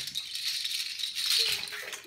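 A steady rattling, like a shaker being shaken.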